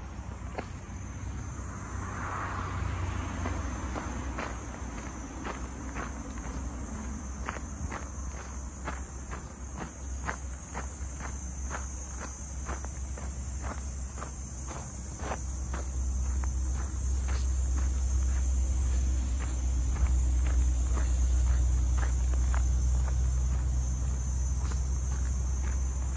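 Footsteps on a dirt path at a walking pace of about two steps a second, over a steady high drone of insects. A low rumble grows louder about two-thirds of the way through.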